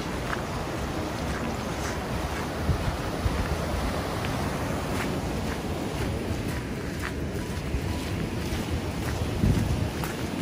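Steady rushing of a shallow rocky stream's rapids mixed with wind buffeting the microphone, with a louder gust of wind near the end.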